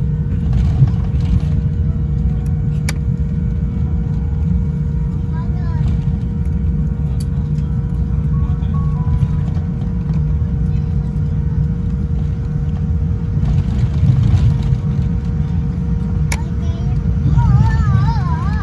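Cabin noise of a Boeing 787-10 taxiing after landing: a steady low rumble from the idling engines and rolling airframe, with a steady hum over it and faint voices in the cabin.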